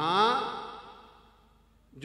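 A man's voice drawing out one breathy word, "naa", that rises in pitch and then trails off over about a second and a half.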